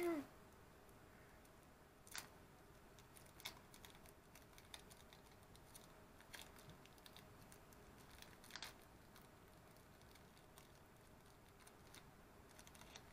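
Near silence with a few faint, scattered clicks and rustles, a second or more apart, from small craft pieces and paper being handled at a table.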